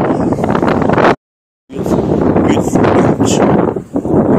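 Wind buffeting a handheld phone's microphone outdoors, a loud steady rush, with the sound cutting out completely for about half a second just after a second in, at an edit.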